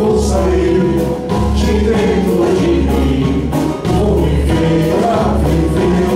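Male singer performing a song live with a band: the voice carries the melody over a bass line and a steady beat, with other voices singing along.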